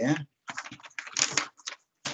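Typing on a computer keyboard: a quick, irregular run of key clicks lasting about a second and a half.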